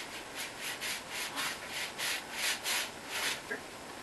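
Paintbrushes scrubbing acrylic paint onto stretched canvas: a quick run of short strokes, about four or five a second, that stops a little past three seconds in.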